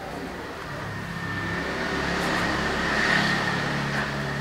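A motor vehicle passing by, its engine growing louder to a peak about three seconds in and then fading.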